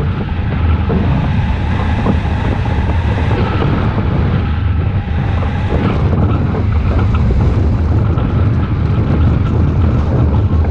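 Wind rushing over the microphone of an action camera mounted on a hang glider in flight: a loud, steady rumble of airflow buffeting, heaviest in the low end.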